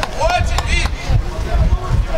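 Men shouting on a football pitch during play, one shout clearly about half a second in, over a steady low rumble. A sharp knock comes right at the start.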